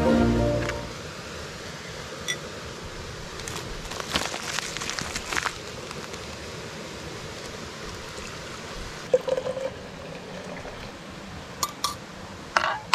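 Background music fades out within the first second, then herbal tea is made in a French press over a steady background rush: paper rustling about four to five seconds in, as loose herbs come out of their bag, and small metal-on-glass clinks from a fork at the press, briefly around nine seconds and again near the end.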